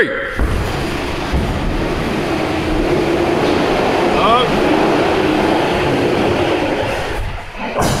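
Wheels of heavily loaded warehouse carts carrying large boxed loads rolling fast across a concrete floor: a steady rumble and rattle that starts just after the count and dies away shortly before the end.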